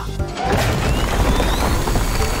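Cartoon sound effects of rocks crashing and being shoved aside by a machine, with a rising whine, over background music.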